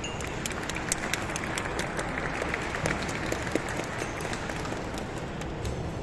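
Audience applauding, many scattered hand claps at a steady level.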